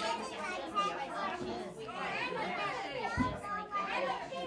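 Young children and adults chattering over one another while they play, with a dull thump a little after three seconds in.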